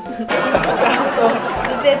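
A group of people bursting into laughter and talking over one another, starting about a third of a second in.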